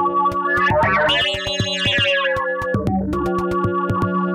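Buchla-format modular synthesizer patch playing: steady ringing tones from a 1979 digital resonator module over a fast run of clicks and a kick drum about every two seconds. Between about one and three seconds in, the tone brightens into a cluster of high, bell-like overtones as the resonator's knobs are turned.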